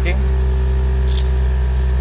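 Nissan 350Z's VQ35 V6 engine idling just after a cold start, heard from inside the cabin as a steady low hum. A short hiss comes about a second in.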